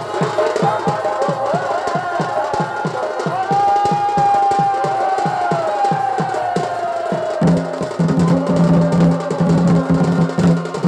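Live Chhau dance music: drums beating a fast, even rhythm of about three strokes a second, under a wavering, gliding melody from a shehnai-type reed pipe. A low steady tone joins about seven and a half seconds in.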